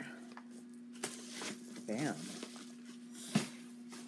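A paper envelope being handled and closed up, with light rustling, a few soft ticks and one sharp click a little over three seconds in, over a steady low hum.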